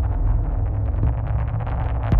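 Electronic music: a sustained deep synthesizer bass under a rapid, evenly pulsing synth pattern.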